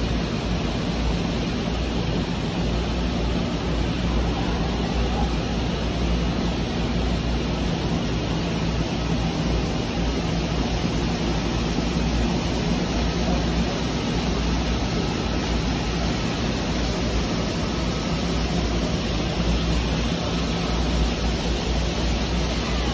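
A steady rushing noise, even and unbroken, with a faint low hum beneath it.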